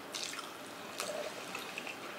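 Faint wet clicks and smacks of people eating with their hands, a few small sticky ticks just after the start and a sharper one about a second in.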